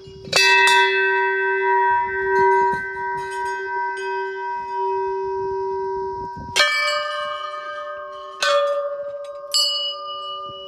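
Hanging brass temple bells struck one after another. The first strike rings on for about six seconds as a steady, slowly fading tone. Three more strikes follow in the last few seconds, adding a higher bell to the ring.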